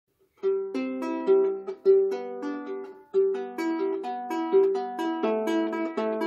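Anglo-Saxon lyre with a cedar soundboard, maple body and fluorocarbon strings being plucked: a melody of single notes that ring over one another, growing denser after about three seconds.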